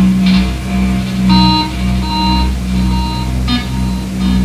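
Live electronic noise music: a steady low drone with three short, high-pitched beeps in the middle and brief noisy crackles near the start and near the end.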